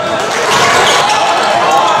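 Sounds of a live basketball game in a gym: a basketball bouncing on the hardwood court over a steady murmur of crowd and players' voices.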